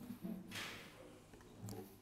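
Faint handling of an acoustic guitar being turned over in the hands, with a short soft rustle about half a second in.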